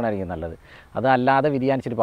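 A man speaking in Malayalam, with a short pause about half a second in.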